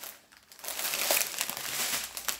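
Small clear plastic bags of diamond-painting drills crinkling as they are picked up and handled, starting about half a second in.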